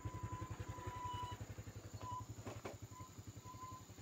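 Motorcycle engine idling with a steady, rapid, even putter while stopped.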